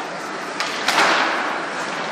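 Ice hockey play: a sharp crack about a second in, with a smaller knock just before it, ringing out through the arena over the steady rink noise.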